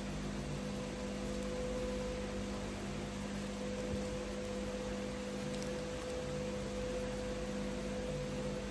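A steady low hum with two constant tones over a faint even hiss: background room tone.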